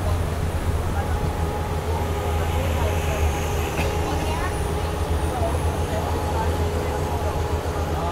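Speedboat engine running at a steady cruise, a continuous low drone, with water rushing past the hull.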